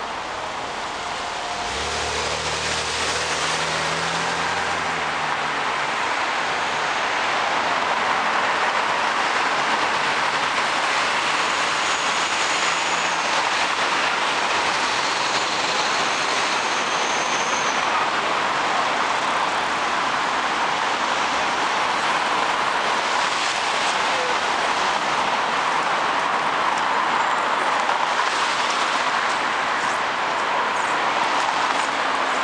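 Dense city-street traffic: a steady roar of many cars and taxis moving and idling, swelling about two seconds in and then holding. A nearby engine hums low for a few seconds early on, and there are a couple of faint high squeals, such as brakes, in the middle.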